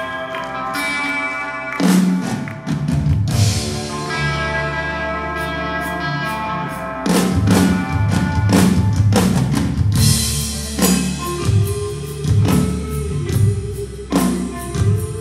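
Live hard-rock band playing an instrumental passage on distorted electric guitar, bass and drum kit. Held chords are punctuated by single drum hits, then the drums settle into a full steady beat about halfway through, and a long held guitar note rings near the end.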